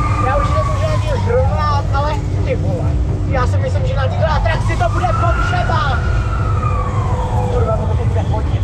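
A siren wailing, its pitch rising slowly and falling back twice, over a heavy low rumble; voices shout over it.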